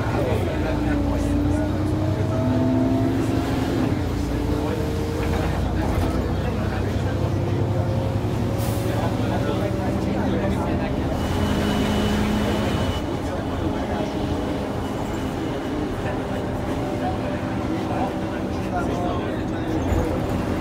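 Ikarus 435 articulated bus heard from inside, its diesel engine pulling as the bus drives. The engine note climbs, then drops back at gear changes, over a steady low rumble.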